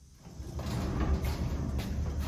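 Heavy metal workbench cabinet, loaded with a vise and a tool chest, pushed across a concrete floor: a low, grinding, scraping rumble that builds about a third of a second in and stays loud.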